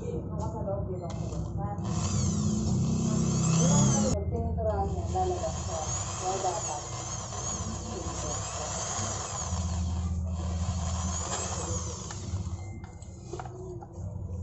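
Corded electric drill boring into a car side mirror's folding mechanism. It starts about two seconds in, runs in stretches with its speed rising and falling, and stops briefly about four seconds in and again around ten seconds.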